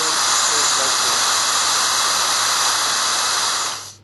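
Loud, steady hiss of compressed air blown into a Delphi DP200 diesel injection pump to raise its internal pump pressure, moving the torque-control levers. It cuts off near the end.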